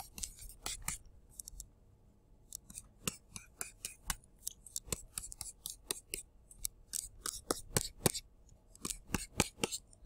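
A stylus tapping and scratching on a tablet screen as short strokes and tick marks are drawn: an irregular series of quick clicks, several a second, with a short pause about two seconds in.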